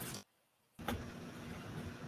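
Faint steady hum and hiss of room noise through an open microphone on a video call, with a faint steady tone in it. It cuts out to dead silence for about half a second near the start, then comes back with a click.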